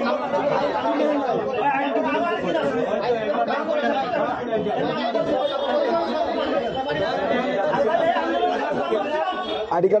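Crowd chatter: many men talking over each other in a packed room, a steady babble of overlapping voices with no single voice standing out.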